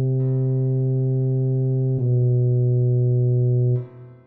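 Tuba playback of the arranged melody: a low C held for about two seconds, then sounded again and held until it cuts off just before the end for a rest.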